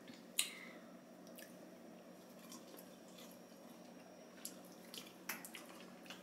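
Faint chewing of crumbly, dried-out egg-white meringue crumbs: a few soft clicks and mouth noises, the clearest about half a second in and a few more near the end, over a low steady hum.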